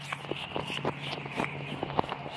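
Footsteps walking across a grass lawn: a few irregular soft thuds and rustles over faint steady background noise.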